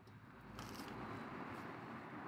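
Faint, steady chewing of a bite of deep-fried, batter-coated chicken nugget.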